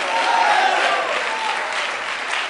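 Congregation applauding, slowly dying down.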